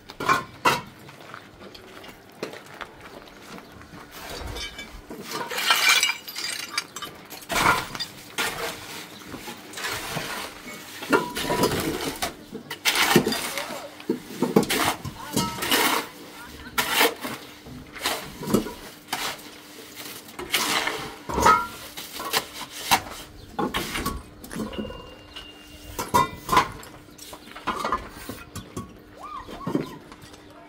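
Irregular sharp clinks and knocks throughout, mixed with a person's voice at times.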